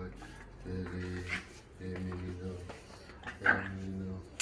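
Dogs at rough play, a pit bull and a French bulldog puppy, making several drawn-out low vocal sounds, each under a second. A sharper, higher cry comes about three and a half seconds in.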